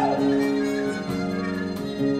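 Live pit band playing an instrumental passage of a musical-theatre song: held chords over a light, steady beat.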